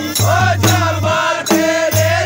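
Men singing a Kumaoni khadi Holi song together, with a dhol drum keeping a steady beat of low thumps, about two a second.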